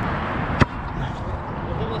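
Skateboard wheels rolling over asphalt, a steady rumble, with one sharp click about half a second in.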